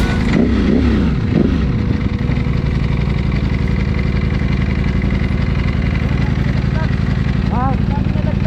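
Ducati V4 Speciale motorcycle engine heard from the saddle: its pitch swings up and down in the first second or so, then settles into a steady low-revving beat as the bike cruises.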